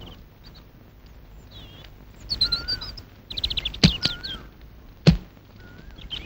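Birds chirping and whistling, with two car doors of a Hindustan Ambassador shut with a thud one after the other, the first a little before four seconds in and the second about a second later.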